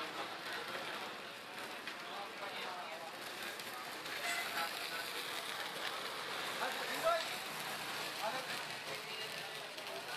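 Dosas sizzling on a large flat cast-iron griddle as cooks spread and lift them with metal spatulas, under background chatter, with one sharp clink about seven seconds in.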